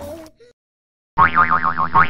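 Cartoon boing sound effect: a springy tone whose pitch wobbles up and down about five times a second, starting about a second in, after background music fades out.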